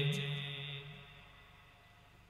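The tail of a man's drawn-out chanted note in a sermon, fading away over about the first second, then near silence.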